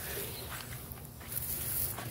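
Footsteps on dry pine-straw mulch with rustling, a brighter rustle about one and a half seconds in.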